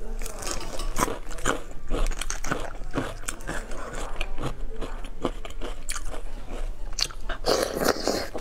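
Close-miked eating sounds: chewing, lip-smacking and sucking while eating braised beef bone marrow, made up of many short sharp mouth clicks.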